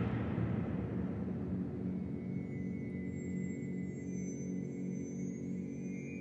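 Ominous horror-film score. A loud noisy swell fades away, leaving a low sustained drone with a low note pulsing a couple of times a second and a thin high tone above it.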